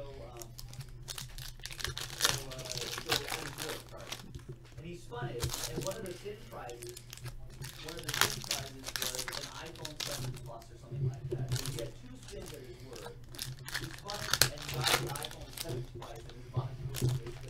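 Trading-card pack wrapper crinkling and tearing in many short bursts as it is pulled open by hand and the cards are handled, with a voice talking underneath.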